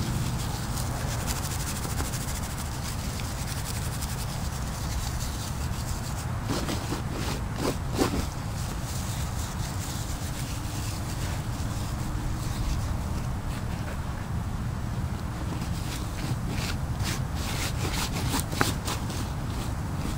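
Dry broom sedge grass being rubbed, twisted and rolled between the hands to buff it into fine tinder fibres: a continuous dry rustling and scratching. Short crisp crackles come more and more often in the second half, over a steady low rumble.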